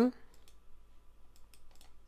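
A few faint, sharp clicks from working a computer, mostly in the second half, as the last spoken word trails off at the very start.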